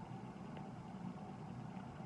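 Faint, steady low hum of background noise with no distinct events.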